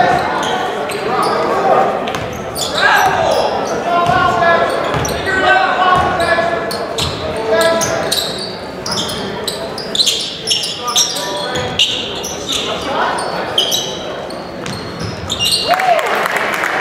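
A basketball dribbling on a hardwood gym floor, with voices of players and spectators calling out, all echoing in a large gymnasium.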